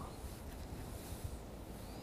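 Faint outdoor ambience: a low, steady wind rumble on the microphone, with nothing else standing out.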